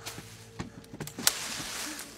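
Film sound effects: several light knocks and one sharp thump about a second in, then a rustling hiss, over a faint steady low hum.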